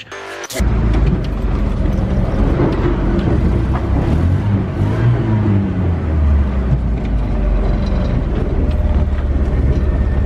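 Car engine and road noise heard from inside the cabin while driving, a deep steady rumble with the engine note rising and falling about halfway through.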